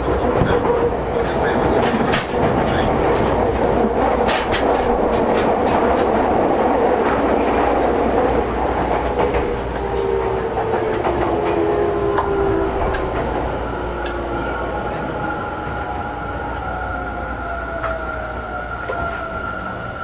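Tokyo Metro 10000-series electric train running on the rails: steady running noise with sharp clicks of the wheels over rail joints. Over the second half a motor whine falls in pitch and the noise eases, as the train slows.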